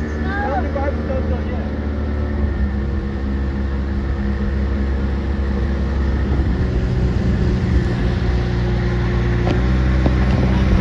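Motorboat engine running steadily under way while towing kneeboarders, with wind and water rushing past the hull.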